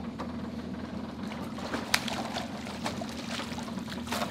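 A blue catfish fighting and splashing at the surface as it is hauled to the boat on a limb line and netted. Sharp splashes and knocks come over a steady low hum, the loudest a little under two seconds in.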